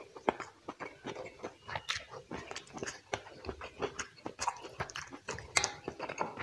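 Close-miked eating of curried chicken: wet chewing and mouth smacks with quick, irregular clicks as fingers pull the gravy-soaked meat off the carcass.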